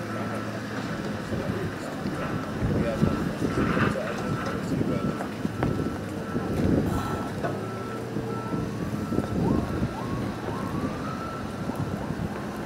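Construction-vehicle backup alarm beeping steadily, about two to three beeps a second, stopping about eight seconds in, under the chatter of a crowd of people walking across the site. A few rising whines follow near the end.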